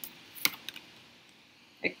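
Oracle cards being handled: a few light clicks and taps of card stock as a card is drawn and set against the stack, the sharpest click about half a second in.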